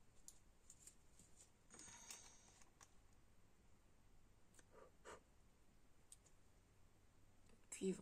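Near silence with faint scattered clicks and a brief soft rustle about two seconds in, from small plastic paint pots being handled; a woman's voice begins right at the end.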